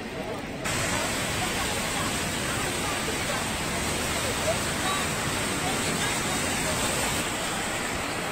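Steady hiss of rain falling, which comes in abruptly just under a second in and holds level.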